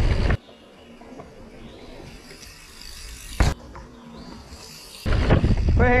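Wind and trail noise from a mountain bike descent on the rider's camera microphone, which drops away abruptly about half a second in to a much quieter stretch. A single sharp thump comes about three and a half seconds in, and the loud riding noise returns about five seconds in.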